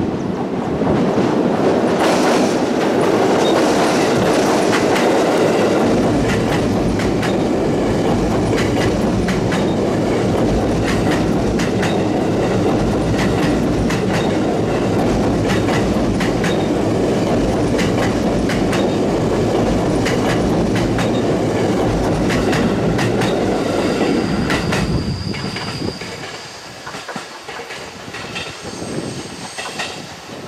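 JR East E257 series 5000 electric multiple unit passing close at speed: a loud steady rumble with a rapid clickety-clack of wheels over rail joints. About 25 seconds in, it drops to a much quieter, slower train sound with a faint high wheel squeal and occasional clicks.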